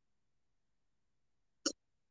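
Near silence, broken near the end by one very short vocal sound from the presenter, a quick catch of breath like a hiccup, just before she speaks again.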